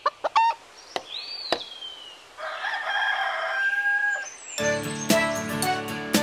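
Cartoon chicken sound effects: a few sharp clicks, a short high gliding whistle, then a chicken crowing for about two seconds. Children's music with a steady beat starts about four and a half seconds in.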